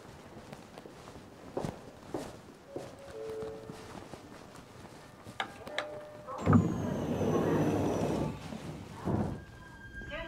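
Footsteps on station stairs, a few soft steps and thuds, then a loud rushing noise lasting about a second and a half with a faint falling whistle, and a shorter rush near the end.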